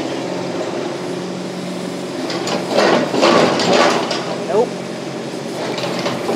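Kubota KX71-3 mini excavator's diesel engine running steadily. From about two and a half to four seconds in there is a louder spell of scraping and clatter as the dozer blade pushes sandy dirt and the tracks drive forward.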